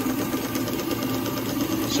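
Small two-cylinder live-steam engine and the shunt-wound DC dynamo it drives, running steadily under load.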